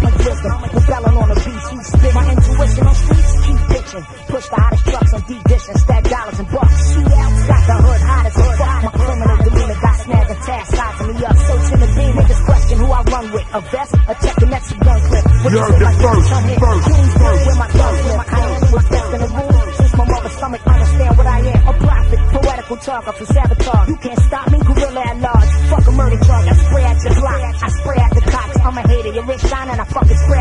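Hip hop track with rapping over a heavy bass beat; the bass drops out briefly a few times.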